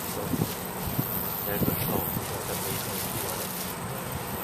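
Wind on the microphone, a steady rushing noise, with faint low voices in the background.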